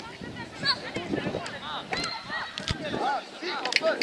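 Several children's voices calling and shouting over one another across a football pitch, with a few sharp knocks among them.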